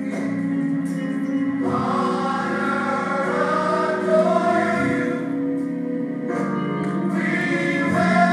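Gospel choir singing over held low chords, the fuller voices coming in about two seconds in.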